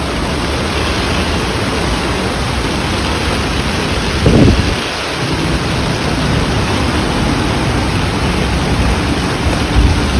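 Heavy rain and floodwater running through a street, a loud, steady hiss, with a brief low rumble about four seconds in.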